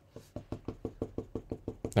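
Stamp ink pad tapped rapidly against a rubber stamp on a clear acrylic block to ink it: a quick, even run of light plastic taps, about ten a second.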